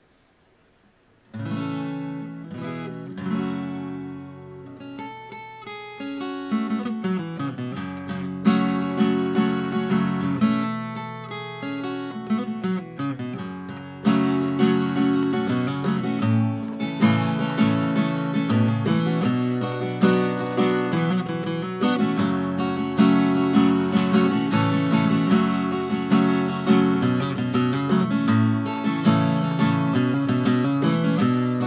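Seagull Natural Elements Mini Jumbo acoustic guitar with a solid spruce top, played with a capo: chords begin about a second and a half in, then are strummed harder and louder from about halfway through.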